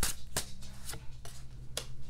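A deck of tarot cards being shuffled in the hands, with a few sharp clicks of card against card about half a second apart.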